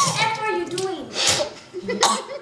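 Muffled closed-mouth voices: girls humming and giggling through mouths full of ground cinnamon, with a short breathy puff or cough about a second and a half in.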